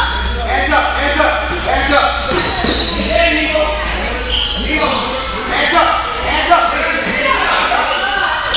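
Basketball players' sneakers squeaking on the gym floor and a basketball bouncing during play, with many short sharp squeaks, set against shouting voices and echoing in a large gym hall.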